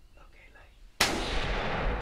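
A single gunshot about a second in, sudden and loud, with a long ringing tail after it: the shot that drops a whitetail doe. Faint whispering comes before it.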